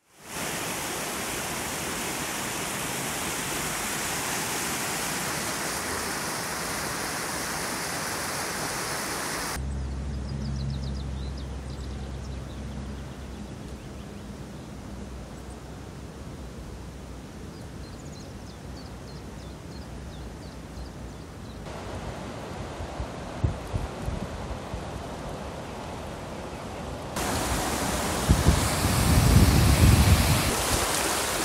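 Water rushing steadily through a weir sluice for about the first ten seconds. After a cut comes a quieter stretch with a low hum and a few knocks, and near the end white water pours over a low stone weir with some splashing thumps.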